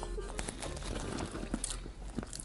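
Faint chewing and mouth noises of someone eating fries with Nutella, a few soft scattered clicks over a low room hum.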